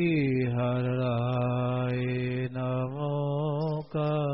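A man's voice chanting an opening invocation in long, drawn-out notes. The first note glides down and is held for about two and a half seconds. After a brief break a second held note wavers, then stops for a moment just before the end.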